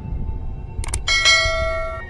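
A bell chime in the closing music: after a brief flutter of clicks, a bell is struck about a second in, struck again just after, and rings on with several steady tones over a low rumble.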